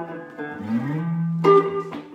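Plugged-in guitar played briefly: a few ringing notes, a low note sliding up in pitch about half a second in and holding, then a fresh plucked note about a second and a half in.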